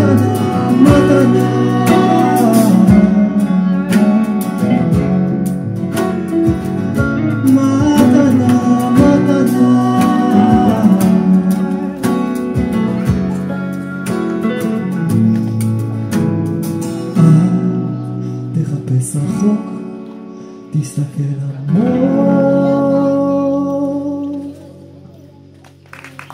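Live band music: acoustic and electric guitars with a woman singing. The playing thins out in the last few seconds, and a long held note comes in near the end.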